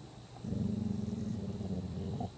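Large black dog growling low at a cicada on the ground: one long, steady growl starting about half a second in and lasting nearly two seconds.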